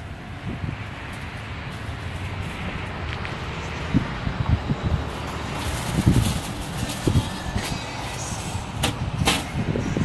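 Outdoor street ambience with road traffic running steadily. A few short knocks and clicks come about four, six and nine seconds in.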